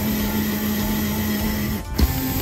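Electric drill running steadily as it drills out an old rivet in an aluminum window frame, the rivet spinning in its hole with the bit. The drill stops briefly near the end and starts again at a slightly higher pitch.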